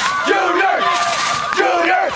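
A crowd of spectators shouting and cheering, many high voices yelling over one another, some held as long calls.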